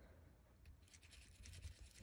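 Faint scratching of a metal ball stylus rolling a paper flower center against a textured flower shaping mat, starting about a second in.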